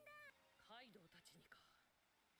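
Near silence, with faint high-pitched character voices from the anime playing very low.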